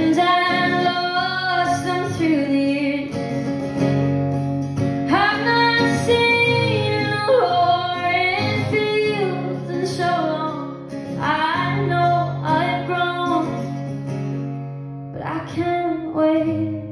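A female singer performing a song live, accompanying herself on an acoustic guitar, with her voice amplified through a microphone and a small PA speaker in a large hard-floored hall.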